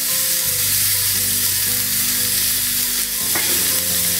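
Beef mince patty frying in a non-stick pan: a steady sizzling hiss, with background music's held notes beneath it.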